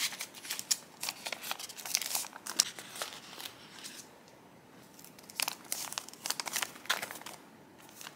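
Paper envelopes and sticker packaging rustling and crinkling as they are handled, in two spells of crackling with a quiet stretch of about a second and a half in the middle.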